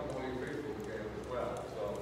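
Indistinct talking, with faint light clicks.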